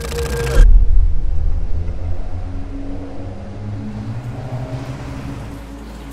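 Cinematic sound-design hit: a short rush of noise ending in a deep boom about half a second in, then a low rumbling drone with a few held low tones that fades away over the next five seconds.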